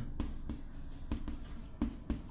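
White chalk writing on a green chalkboard: light scratching broken by a few sharp taps as letters are formed.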